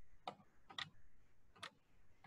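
Three faint, unevenly spaced clicks of a computer mouse against near silence.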